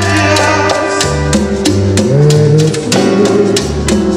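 Live tropical band music from a sonora orchestra: a bass line, guitar and percussion keeping a steady beat.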